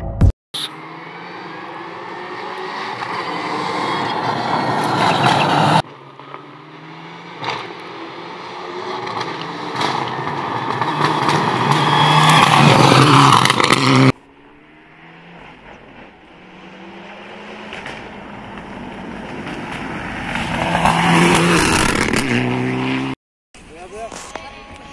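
Rally cars at full throttle on a gravel stage, heard in three short passes. In each, the engine rises in pitch through the gears and grows louder as the car approaches.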